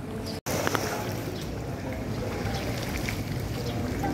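Swimming-pool water sloshing and splashing as children wade and swim, over a steady low rush like wind on the microphone. The sound drops out completely for an instant about half a second in.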